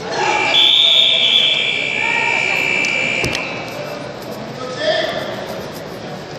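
An electronic buzzer holds one steady high tone for about three seconds, then cuts off suddenly with a click. Voices carry around it in a large, echoing hall.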